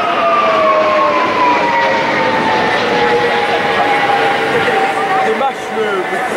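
Jet engines of a large twin-engine aircraft flying overhead: loud jet noise with a whine that falls steadily in pitch as it passes.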